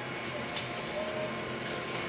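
Colour laser copier running while it prints, a steady mechanical whir with faint thin tones, as a printed sheet is fed out into the output tray near the end.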